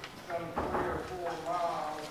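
Speech only: a person talking, away from the microphone.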